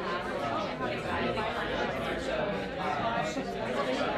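Several people talking at once in overlapping conversations, a steady chatter with no single voice standing out.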